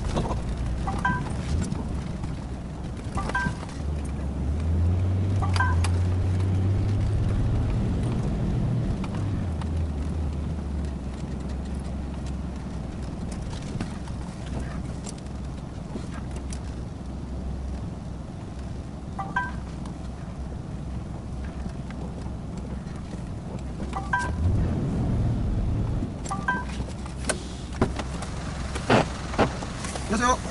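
A 5-ton truck's diesel engine running, heard inside the cab while the truck manoeuvres at low speed. The engine note rises and grows louder for a few seconds about four seconds in, and again about twenty-four seconds in. Short two-note beeps sound several times.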